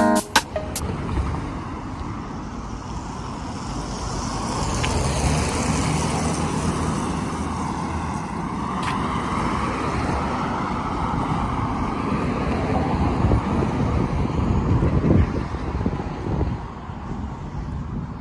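Road traffic on a wide city street: a steady hum of cars and a bus driving past, swelling twice as vehicles go by and then fading.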